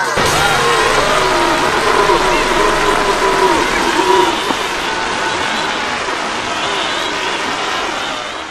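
Voices distorted by a heavy audio effect, warbling over a dense, steady hiss-like noise. The voices drop away about halfway through, leaving the steady noise.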